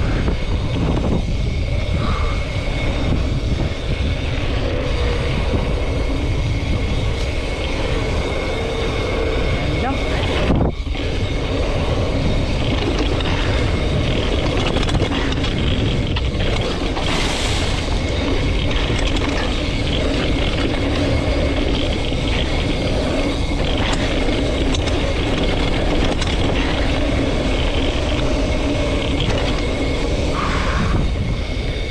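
Schwinn Axum DP mountain bike ridden fast on a sandy dirt trail: steady wind rush on the camera microphone over the rumble of the tyres rolling on sand and dirt, with a brief jolt about ten seconds in.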